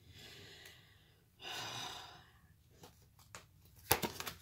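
A single soft breath, under a second long, about a second and a half in, followed by a few faint ticks and a sharper click near the end as tarot cards are handled.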